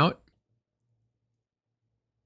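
A spoken word trailing off in the first moment, then near silence.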